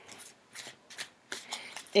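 Tarot cards being shuffled in the hands: a string of short, quiet rustling flicks in a pause between sentences.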